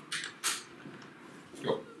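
Plastic zombie miniatures being handled and set down on the cardboard game board: two brief scraping rustles at the start, then quiet handling.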